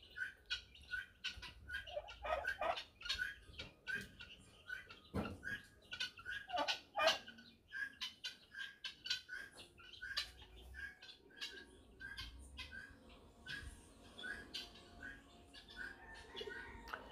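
Helmeted guineafowl calling: a string of short, harsh repeated notes, about two or three a second, that thins out after about ten seconds.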